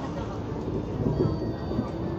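Cabin noise of a Hyundai New Super Aero City high-floor natural-gas city bus driving along: steady engine and road noise heard from inside.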